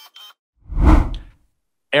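A whoosh transition sound effect: one short swell of rushing noise about a second in, rising and fading away within under a second.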